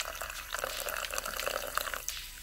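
Carbonated soda poured in a thin stream over a rubber prop tongue into a glass of ice, splashing and crackling with fizz. The pour stops near the end.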